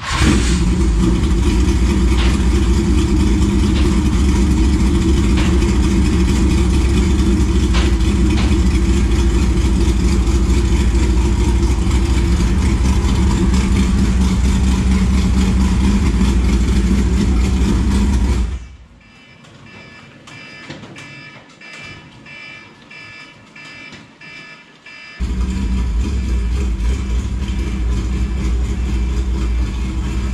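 Dirt late model race car's V8 engine running loud and steady at idle. A little past halfway it drops off abruptly to a much quieter stretch with small clicks for about six seconds, then the same loud engine sound returns.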